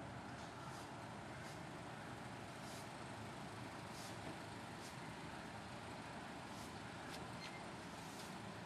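Quiet suburban night background: a steady low rumble like distant road traffic, with faint short high ticks about once a second. No thunder.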